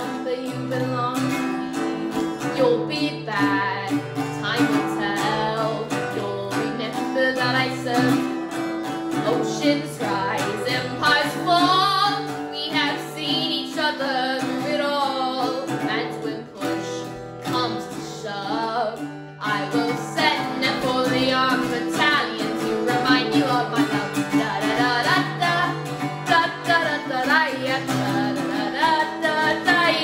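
A boy singing a song while strumming chords on a small-bodied acoustic guitar.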